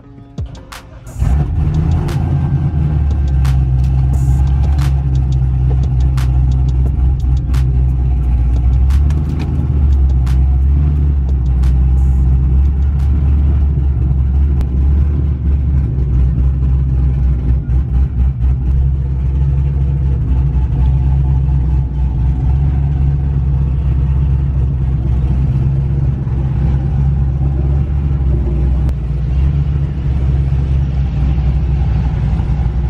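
Car engine and exhaust running with a steady low drone while the car rolls slowly, heard from inside the cabin, with scattered light clicks during the first several seconds.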